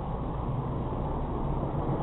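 Steady low rumble of a car's engine and tyres heard from inside the cabin as it drives at low speed round a roundabout.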